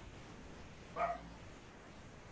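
A dog barking once, briefly, about a second in, faint against a quiet room.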